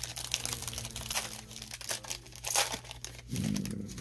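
Foil wrapper of a Panini Prizm baseball card pack crinkling in the hands, a dense run of short crackles. A low voice murmurs near the end.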